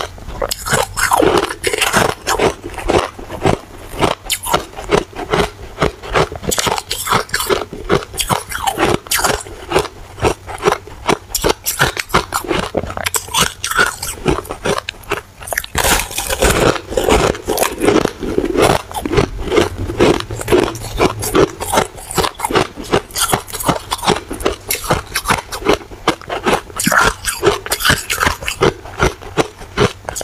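Soft, powdery white ice being bitten and chewed close to the microphone: a dense run of crisp crunches, several a second, that goes on without a break.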